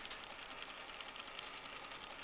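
Faint, rapid, even mechanical clicking.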